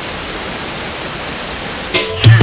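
Steady rush of falling water from a waterfall: an even, unbroken hiss with no pitch.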